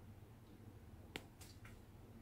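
Near silence: room tone, broken by one faint sharp click just after a second in and two fainter ticks soon after.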